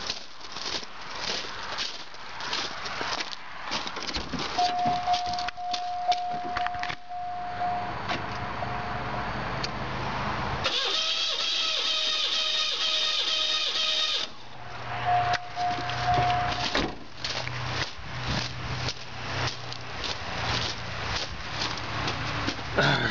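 Starter motor cranking a V6 that has its spark plugs out for a compression test. It turns evenly for about three and a half seconds just past the middle. Before and after the cranking a steady high warning tone sounds, amid footsteps on gravel and handling noise.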